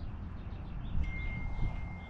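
A low rumble, with a single steady high ringing tone that starts about halfway through and holds.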